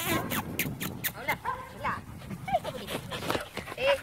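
A pack of dogs playing together, giving scattered short barks and brief whines that rise and fall in pitch.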